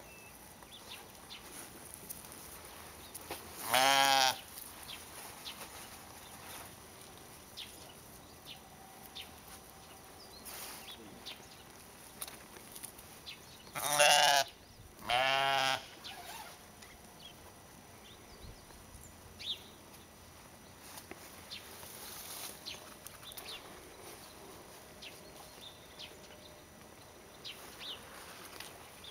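Sheep bleating three times: one loud quavering bleat about four seconds in, then two more close together a little past the middle.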